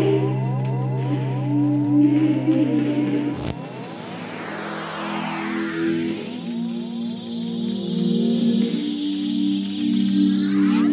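Intro of a chill electronic track: held synth chords under a repeating, rippling synth figure. A low bass note drops out about a third of the way in, and a swooshing sweep falls in pitch through the middle.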